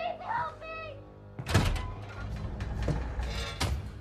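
Film soundtrack: a music score with a heavy thud about a second and a half in and a second sharp knock near the end, and a brief vocal sound in the first second.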